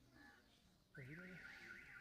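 An electronic alarm starts about halfway through: a warbling tone sweeping up and down about four times a second, with a brief voice beneath it.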